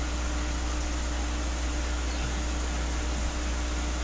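Aquarium aeration running: a steady low hum with an even hiss, as air bubbles stream up through the tank water.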